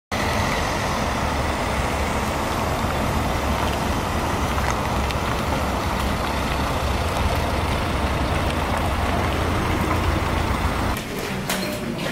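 Police cars' engines running, a steady low rumble with no siren. It cuts off about a second before the end and a few light clicks follow.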